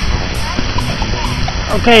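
Wind buffeting the camcorder's microphone: a steady low rumble with a fainter hiss above it.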